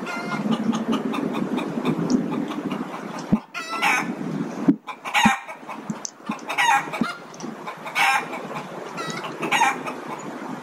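A bird calling repeatedly: a series of short calls about every second and a half, loudest in the second half.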